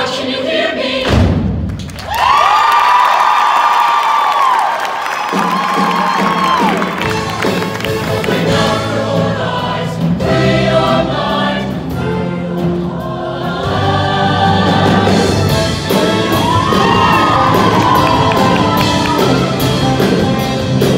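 A show choir singing with accompaniment. About a second in the music breaks off briefly, then the choir holds high chords with the bass gone for a few seconds before the full accompaniment comes back in.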